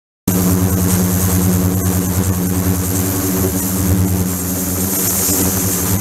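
Ultrasonic tank running: a steady electrical hum made of several even tones, with a bright hiss high above it. The sound sets in a moment in, with a faint tick near the two-second mark.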